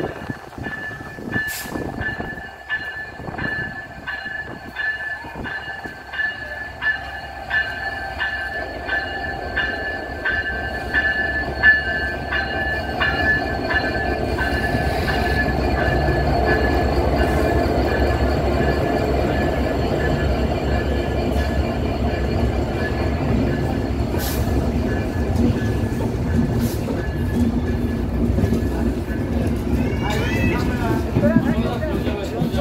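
Bangladesh Railway diesel locomotive hauling the Banalata Express intercity train, pulling slowly into the station along the platform. In the first half there is a steady high squeal with a regular beat. From about halfway the locomotive's low engine rumble grows loud as it passes close by, and the coaches then roll past.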